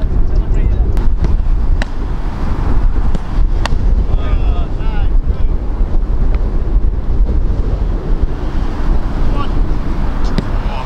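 Strong wind buffeting the microphone with a steady low rumble. A few sharp knocks of a football being struck or caught cut through it, the clearest about two seconds and three and a half seconds in.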